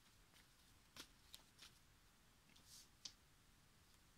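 Near silence, broken by a few faint, light clicks and a brief soft rustle, the sound of small objects being handled.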